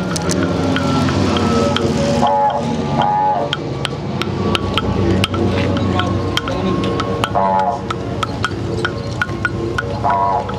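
Didgeridoo playing a continuous low drone, with a few short higher-pitched calls voiced through it. Sharp wooden clicks of clapsticks keep an even beat of about three a second.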